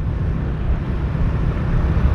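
Motorcycle engine running steadily while riding slowly in traffic, with wind and road noise.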